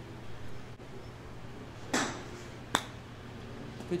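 A golf wedge striking a chip shot off an artificial-turf practice mat, a single sharp impact about two seconds in, followed under a second later by a brief sharp click.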